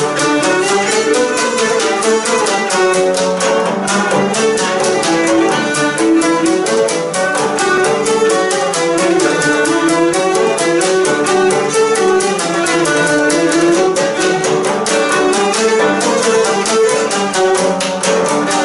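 Instrumental opening of a Greek song: a bowed fiddle melody played over a fast, even beat, with no singing yet.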